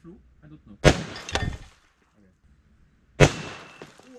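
.357 Magnum handgun fired twice, about two and a half seconds apart, each a sharp crack with a short tail. A smaller knock follows the first shot about half a second later.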